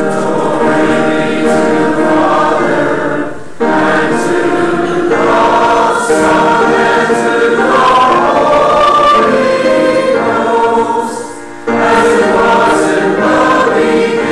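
Church choir and congregation singing a hymn together, in long sung phrases with short pauses for breath between them.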